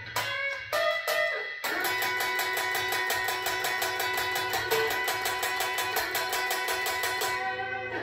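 Telecaster-style electric guitar being played: a few separate picked notes, then from about two seconds in a fast, even run of picked strokes on held notes, which stops just before the end.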